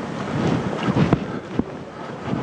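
Wind buffeting the microphone of outdoor field footage, a rough, gusting noise, with a couple of short knocks about a second in and again about half a second later.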